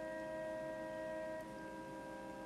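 Church organ holding a sustained chord of steady tones. About a second and a half in, one of the notes drops away and the sound gets slightly quieter.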